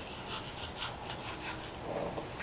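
Manual toothbrush scrubbing teeth: rapid, rhythmic back-and-forth scratchy strokes, several a second.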